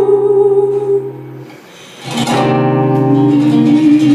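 Live acoustic guitar music. The playing dies away about a second in, there is a short lull, and about two seconds in a strummed chord rings out and the guitar plays on.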